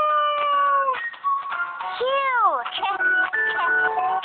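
Children's cartoon music with synthesized sound effects: a held note slides down about a second in, then a swooping tone rises and falls about two seconds in, followed by short plucky notes.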